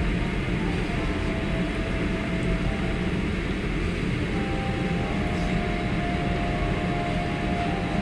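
Steady rumbling background noise of a restaurant room, even in level throughout, with a faint held tone in the second half.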